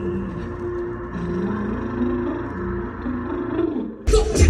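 Film soundtrack music playing over cinema speakers: low held tones that slide from one pitch to another, with no beat.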